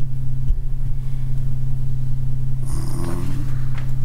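Steady, loud low electrical hum, like mains hum picked up by the sound system, running without a break. A faint voice is heard briefly about three seconds in.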